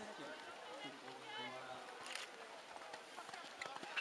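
Faint, indistinct talk from people close to the microphone, with a short rustling noise about two seconds in.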